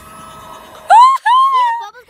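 A child's loud, high-pitched wordless squeal in two parts, each rising then falling in pitch, starting about halfway in. It follows a faint, steady hum.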